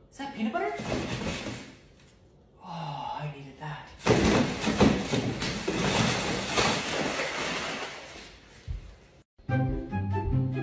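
A plastic kitchen garbage bag rustling and crinkling loudly as it is handled and pulled out of a pull-out bin, starting about four seconds in after a few short vocal sounds.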